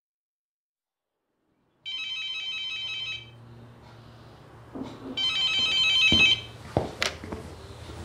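A telephone rings twice, starting about two seconds in, each ring a rapid trill lasting about a second. Near the end come a few sharp clicks as the receiver is picked up.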